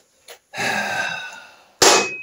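A long, exasperated sigh lasting about a second, followed near the end by a sharp metallic clink with a brief ring.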